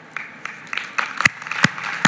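Hand-clapping applause that starts up and grows louder, with a few sharp single claps standing out in the second half.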